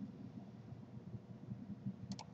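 Faint room tone: a low, uneven background rumble picked up by the recording microphone, with no distinct sound event.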